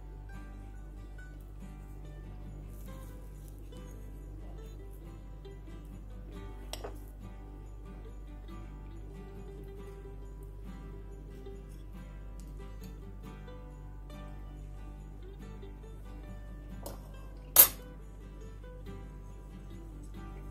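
Quiet background music, with a metal fork clinking on a white ceramic plate: a faint clink about a third of the way in and one sharp, loud clink near the end.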